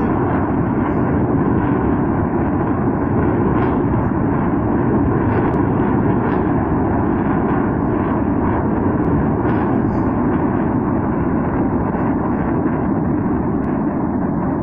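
A continuous loud rumble of a running vehicle, steady throughout, with no separate shots or blasts.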